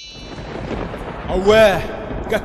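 Title-sequence sound effect: a low, thunder-like rumble, with a short pitched sound that rises and falls about one and a half seconds in.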